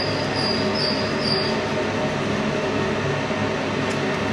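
Steady whirring noise of a fan or ventilation unit running, with a faint high whine coming and going during the first second and a half.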